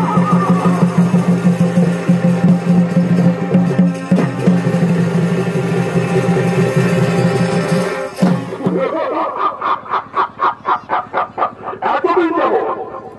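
Purulia Chhau dance music, drums beating under a steady low drone with a reed-pipe melody. About eight seconds in the low drone stops and a fast, evenly pulsing, wavering sound takes over.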